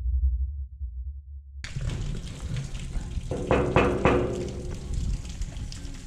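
A deep low rumble that cuts off abruptly about a second and a half in. It gives way to a steady hiss with scattered knocks and, around the middle, a brief pitched sound.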